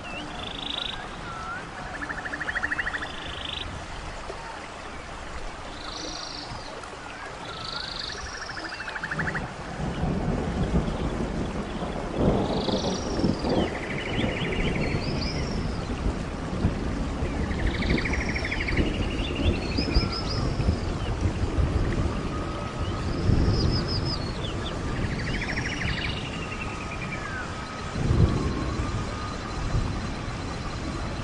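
Tropical rainforest ambience: birds give short, repeating calls every couple of seconds over a steady hiss of rain. From about a third of the way in, a louder low rumble joins beneath them.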